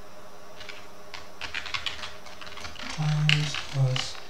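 Typing on a computer keyboard: a run of quick key clicks. Near the end come two short low hums, which are louder than the keys.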